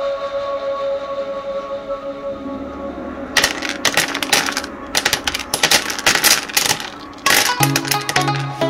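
Music with a held chord, joined from about three and a half seconds in by a rapid, irregular clatter of many small hard objects landing: miniature wooden-and-paper books dropping onto the floor of a book nook and piling up.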